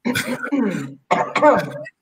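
A person laughing and clearing their throat, in two short voiced bursts.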